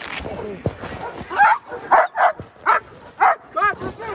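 A dog barking about six times, starting about a second and a half in, in short sharp barks roughly half a second apart.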